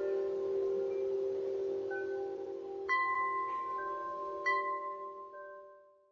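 Intro jingle of ringing chime tones: several sustained, overlapping notes, with fresh strikes about three and four and a half seconds in, dying away near the end.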